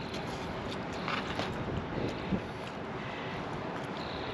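Steady outdoor background noise with wind on the microphone, and a few faint, short sounds about a second in.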